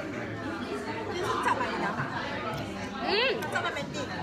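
Background chatter of several voices in a busy restaurant dining room, with one voice briefly sweeping up and down sharply about three seconds in.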